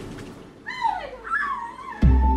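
Two high, whining cries like a whimper: the first slides down in pitch, and the second wavers.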